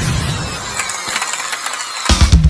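Whooshing intro sound effect under an animated logo: a loud rushing noise with faint falling sweeps up high, its low rumble dying away over the second second.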